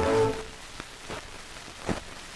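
A band's final held chord dies away about half a second in, leaving the hiss and crackle of a shellac 78 rpm record's surface noise, with a louder pop near the end.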